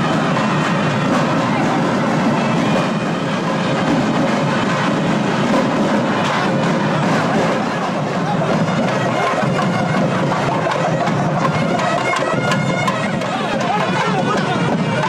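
Nadaswaram, the South Indian double-reed temple oboe, playing processional music with wavering, ornamented melody lines over crowd chatter.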